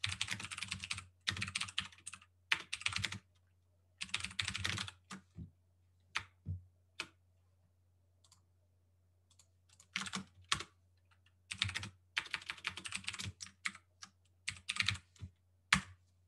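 Typing on a computer keyboard: quick bursts of keystrokes, with a pause of about two seconds in the middle.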